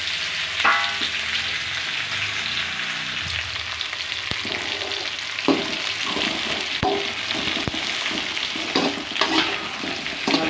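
Chopped tomatoes, shallots, garlic and dried red chillies frying with a steady sizzle in an aluminium kadai, stirred with a perforated metal spatula that scrapes and taps against the pan every so often.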